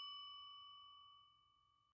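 The fading tail of a single struck bell ding, its few clear tones ringing on and dying away, then cutting off abruptly just before the end.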